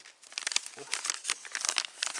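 Thin wrapping of a sterile bandage crinkling as it is pulled open and unwrapped by hand: a dense, rapid run of crackles that starts a moment in.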